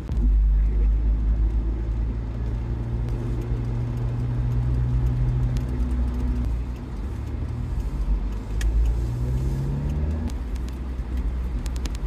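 Engine and road noise heard from inside a Mitsubishi Pajero 4WD driving through town, a steady low rumble. The engine note dips about six seconds in, then climbs again as the vehicle picks up speed.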